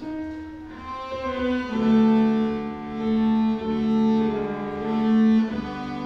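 Cello playing long bowed notes that swell and fade, accompanied by a Kawai digital piano.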